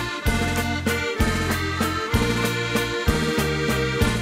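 Instrumental introduction of a Dutch sung ballad: a sustained held-note melody over bass notes that change about once a second, with a steady beat and no singing yet.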